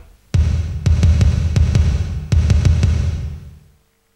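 Theme music with a heavy bass line and a steady drum beat, coming in about a third of a second in and fading out just before the end.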